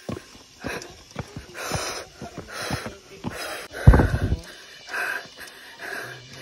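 A woman breathing hard and noisily, a breath about every second, out of breath from climbing stone steps. A heavy low thump comes about four seconds in.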